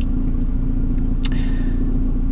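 Steady low rumble of a car running, heard from inside the cabin, with a sharp click about a second in.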